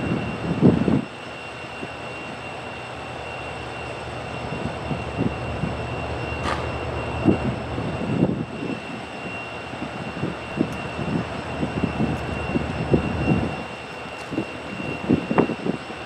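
A lashup of EMD diesel-electric locomotives idling at a standstill, a steady low engine drone, with scattered short low thumps through it.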